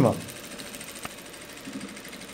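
Industrial lockstitch sewing machine stitching a zipper onto fabric, running with a steady, quiet sound, with a single sharp click about a second in.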